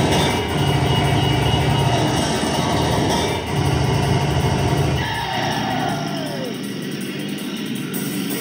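Live industrial music played loud through a concert PA: a steady electronic bass drone under noisy synth texture, with a falling synth sweep about six seconds in.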